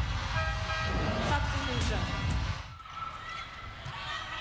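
Arena crowd noise mixed with music, with a few sharp hits. The level drops about two and a half seconds in.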